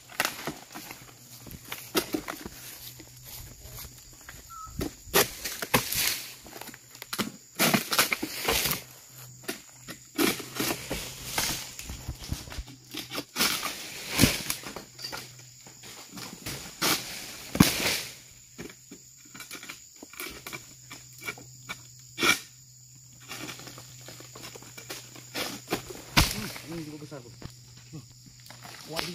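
Oil palm being harvested with a long-pole sickle (egrek): repeated cracking, scraping and rustling of dry palm fronds as they are hooked and cut, with several heavy thumps of cut fronds and fruit falling to the ground.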